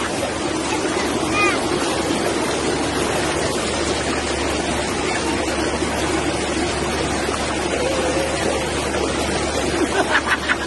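Steady rush of a small waterfall stream pouring over rocks. Brief faint voices are heard over it, once about a second and a half in and again near the end.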